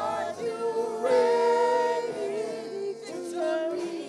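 A small group of singers in a church praise team, singing a gospel worship song together in harmony, with long held notes that waver slightly.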